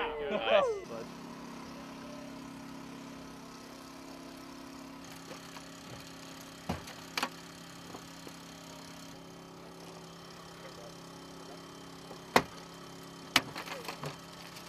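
A pry bar is worked into a car door's seam, giving a few sharp metal clicks and knocks, the loudest two near the end. An engine hums steadily underneath.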